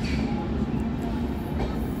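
Train running slowly through a station: a steady low rumble of the moving carriages with a faint steady hum, and faint voices from the platform.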